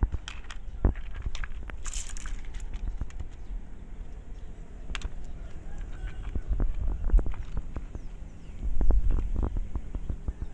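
Wet rough agate stones clicking and knocking against one another and the pebbles around them as they are picked up and handled, over a low handling rumble. The knocks come irregularly, with a cluster of louder ones near the end.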